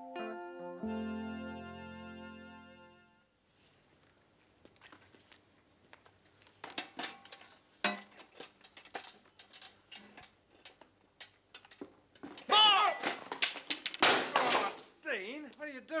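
A short keyboard jingle of descending notes ending in a held chord, then scattered light knocks and clatter of a stepladder and props being handled. A loud cry follows, and near the end a loud clatter as a broom drops to the floor.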